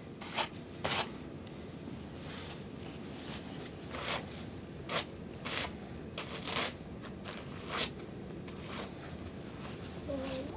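Snow being brushed off the front of a snow-covered car: a series of about a dozen short, irregular brushing strokes.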